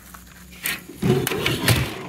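Metal electronic equipment chassis being handled and shifted on a hard surface: a single click, then from about a second in a run of irregular knocks and scraping.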